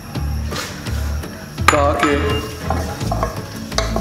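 Sliced onions sizzling in hot ghee in an aluminium pressure cooker, stirred with a wooden spoon that clicks against the pot now and then, over background music with a pulsing bass.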